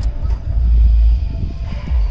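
A loud, deep rumble with little else above it, swelling from about half a second to just over a second in.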